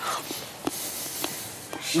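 A man chewing a bite of milk-chocolate Easter egg: a few small mouth clicks over a soft rustling hiss.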